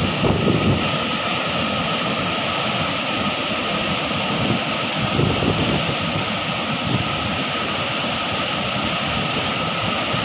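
Steady rushing of a large waterfall plunging into its gorge, with wind buffeting the microphone in gusts in the first second and again about five seconds in.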